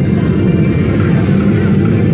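Slot machine spinning its reels, with a steady low rumbling spin sound from the machine over casino background noise.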